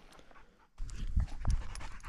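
A dog panting close to the microphone, starting about a second in, with a few low thumps.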